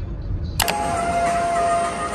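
Low road rumble inside a moving taxi. About half a second in, a sharp click cuts it off and a run of steady held tones begins.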